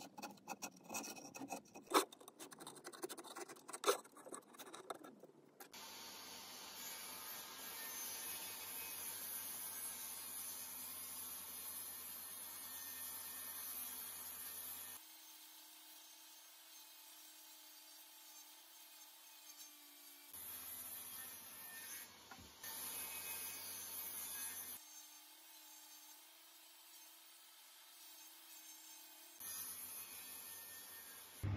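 A steel blade scraping old paint and varnish off a mahogany beam in a quick series of short strokes. After about five seconds it gives way to a faint steady hiss that changes suddenly several times.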